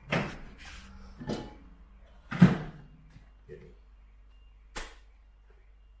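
Several sharp knocks and clicks of kitchen items being handled, the loudest a thud about two and a half seconds in.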